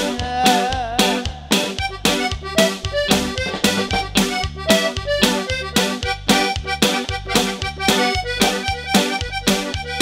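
Live norteño band playing an instrumental stretch without vocals: an accordion melody over electric bass and drums, with a steady, quick dance beat and an alternating bass line.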